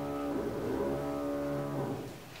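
A man's voice holding a low, steady hesitation sound, twice: a short one, then a longer one lasting about a second and a half.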